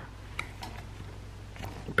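A few faint, light ticks of a gel pen and notebook page being handled, over a steady low hum.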